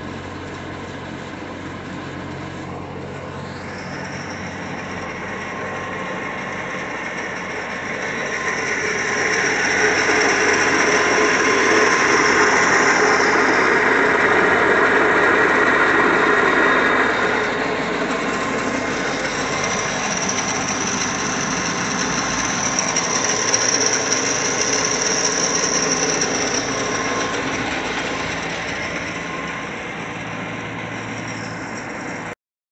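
Electric drive motor of a Pandjiris PR-30 pipe and tank turning roll drive unit running steadily with a high whine. The whine rises in pitch a few seconds in, fades out for a few seconds midway, then returns. The overall sound is loudest for several seconds in the middle.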